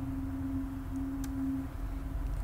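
A steady low hum on one unchanging pitch over a low background rumble, with a faint click a little after the middle.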